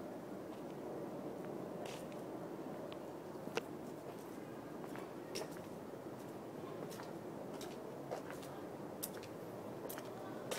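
Steady, low outdoor background noise with a few faint, scattered clicks and taps.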